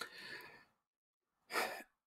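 A man's breath during a pause in speech: a small lip click and a soft sighing exhale, then a quick in-breath about a second and a half in.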